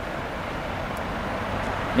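Steady street background noise of road traffic, growing slightly louder toward the end.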